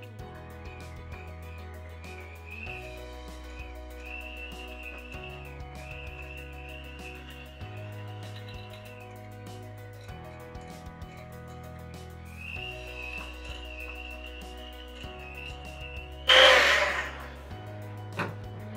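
Electric hand mixer beating a thick cream cheese and peanut butter mixture, a wavering motor whine that stops for a few seconds in the middle and then resumes, over background music with a steady changing bass line. Near the end comes a brief loud clatter about a second long.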